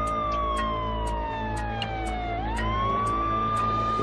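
Emergency-vehicle siren wailing over city traffic: its pitch falls slowly for about two and a half seconds, swoops back up and holds. A steady traffic rumble and a light tick about twice a second run underneath.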